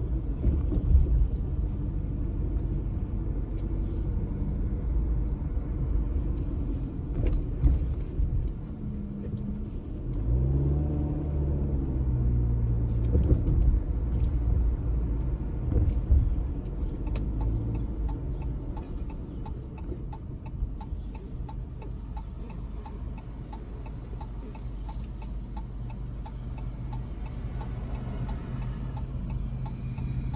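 Car engine and road noise heard from inside the cabin, the engine pitch rising as the car speeds up about ten seconds in. A regular ticking joins in over the second half.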